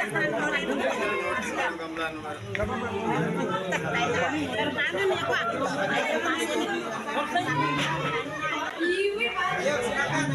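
A crowd chattering, with many voices talking over one another at once.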